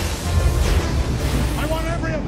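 Film soundtrack: dramatic score over a deep, heavy rumble. A man starts shouting about one and a half seconds in.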